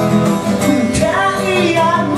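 Solo acoustic guitar playing sustained chords, with a man's singing voice coming in about halfway through.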